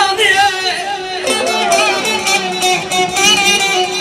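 Male voice singing Azerbaijani mugham into a microphone, the melody wavering in melismatic ornaments, over live plucked-string accompaniment and a steady held drone note.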